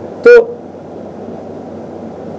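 A man says one short word, then a steady low background hum of noise with no other events.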